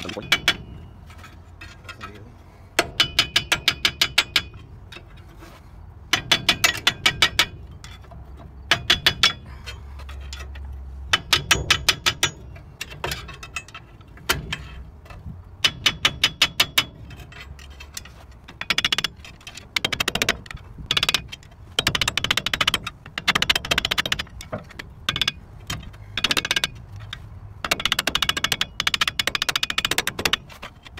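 Runs of quick metallic clicks and taps, each about a second long with short gaps between them and coming closer together in the second half, from hand tools worked against a rusted rear brake drum to free it from the hub.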